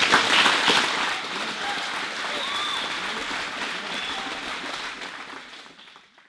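Audience applauding, loudest at first and dying away near the end.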